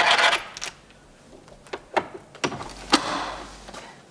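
Clinking and rattling of small metal objects: a burst of rattling at the start, then several separate sharp clicks and clinks.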